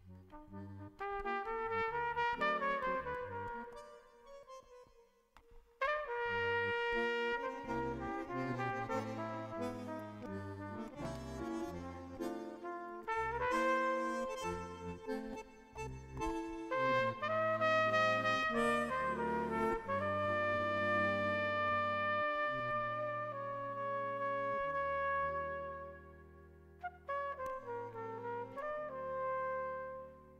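Live jazz duet of trumpet and bandoneon: the trumpet plays a slow melody of long held notes over sustained bandoneon chords. The music drops away briefly about five seconds in, comes back loud, and thins out near the end.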